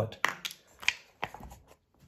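Knife tapping and scraping against an aluminium foil pie tin of spent coffee grounds: a few sharp clicks with light scraping between them.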